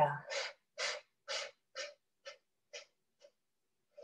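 Seven quick, forceful exhales through the nose, about two a second, each a short puff that grows shorter and weaker toward the end: a round of 'breath of fire' (kapalabhati-style) breathing.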